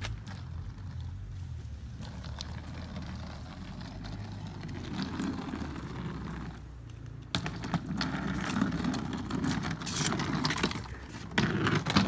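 Wheels of a rolling suitcase rumbling and rattling over a cracked concrete driveway as it is pulled along, getting louder as it comes closer, with a sudden louder stretch about seven seconds in.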